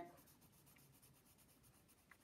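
Faint scratching of a red pencil on lined notebook paper, quick back-and-forth strokes colouring in small circled letters.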